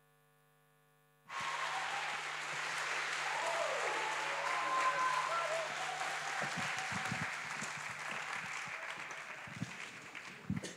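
Silence, then about a second in an audience breaks into applause with whoops and cheers, which slowly dies down.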